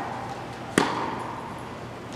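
A tennis ball struck by a racket once, about a second in: a sharp pop with a short echo off the indoor court hall.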